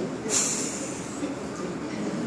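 A pause in amplified speech: steady room noise and hiss in a large hall, with a brief rush of noise about a third of a second in.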